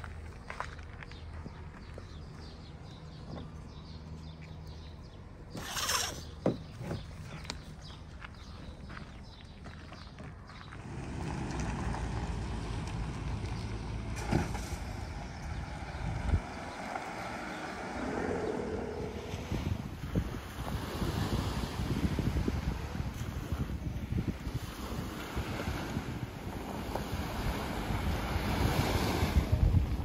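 A low steady hum, likely a vehicle engine running, with a sharp click about six seconds in. From about eleven seconds on, wind buffets the microphone, growing louder near the end.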